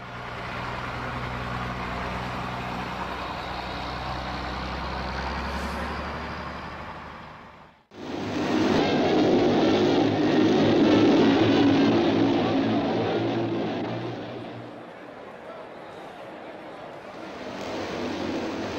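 JAP speedway motorcycle engine sound: a steady running note that cuts off abruptly about eight seconds in. Then comes a louder, rougher spell of engine noise, which eases to a lower level for the last few seconds.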